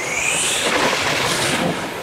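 Loud rushing noise that opens with a rising whistle.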